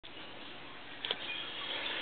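Quiet room tone with a faint hiss, and two small clicks close together about a second in, typical of a hand-held camera being handled.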